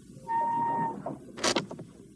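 Film sound effects around a tossed knife: a steady high ringing tone for about half a second, then a sharp click and a couple of lighter knocks.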